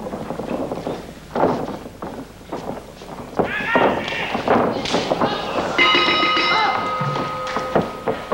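Voices and thuds of feet on the ring canvas, then about six seconds in a bell rings out and keeps ringing: the bell marking the end of the time limit.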